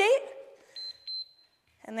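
Interval workout timer giving two short, high-pitched beeps in quick succession about a second in, marking the start of a 30-seconds-on, 10-seconds-off work interval.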